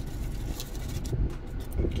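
Low, steady background rumble with a few faint soft rustles; the cheese pour itself makes no clear sound of its own.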